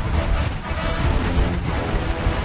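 Background music with a heavy, deep bass running steadily.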